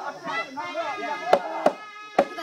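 Voices of a group, then two sharp hand-drum strikes in quick succession about one and a half seconds in, the start of a folk drumming beat.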